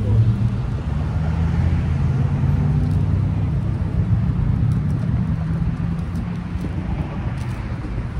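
Steady low rumble of a motor vehicle's engine running close by. Faint papery flicks of Bible pages being turned over it.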